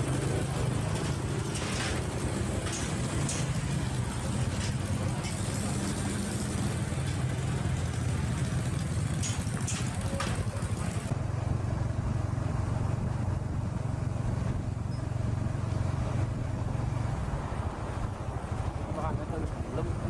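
Steady low hum of small engines as motorbikes ride on and off a small river ferry, with a few short knocks and faint voices in the background.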